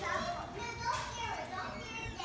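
High-pitched, wordless vocal sounds in short calls whose pitch bends up and down.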